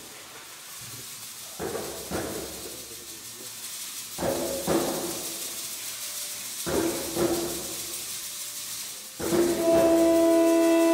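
Small youth ensemble playing a sparse, slow passage: pairs of percussion strokes come about every two and a half seconds, four times, with faint held instrument notes between them. Near the end the wind instruments enter together on a loud sustained chord.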